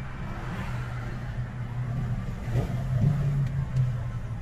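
Steady low hum of a car's engine and road noise heard from inside the cabin, with a brief swell about two and a half to three seconds in.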